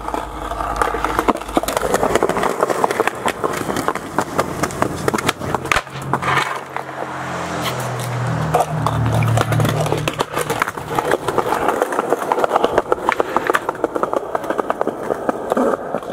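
Skateboard rolling on sidewalk concrete, the wheels rattling with many small clicks and knocks. A lower steady hum rises in the middle and fades out again.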